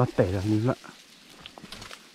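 A man's voice for under a second at the start, then faint rustling of brush with a few light clicks of twigs as branches are pushed aside.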